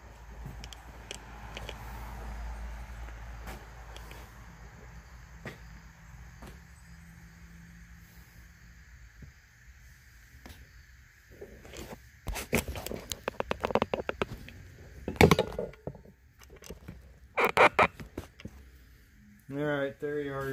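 A phone camera is handled and repositioned on a workbench, giving low rubbing and bumping noise. In the second half come a run of sharp clicks, knocks and clatter from objects being moved and set down.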